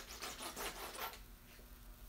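Fingers rubbing and scratching across a textured carbon-fibre skin sheet, a dry rasp for about a second that then dies down.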